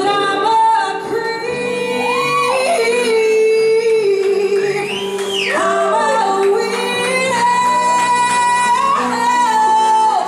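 A woman belting a high, wordless vocal line of long held notes and swooping slides up and down, over a live keyboard-and-bass accompaniment.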